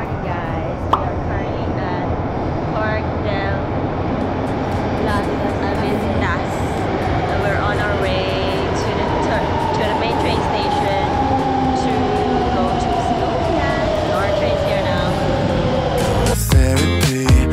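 Madrid Metro train pulling into an underground station: a rumbling noise that slowly grows louder, with a whine that falls steadily in pitch over the last seven seconds as the train slows.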